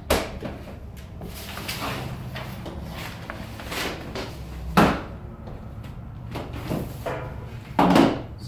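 Handling knocks and clunks from a Trimble robotic total station being carried and set down on a folding table. There is a sharp knock at the start, a heavier thump a little before halfway, and another thump near the end as the instrument lands on the table.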